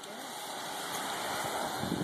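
A car driving past on the street: a steady rush of tyre and engine noise that slowly grows louder.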